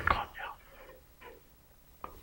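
A man's speech trailing off softly in the first half second, then a near-silent pause.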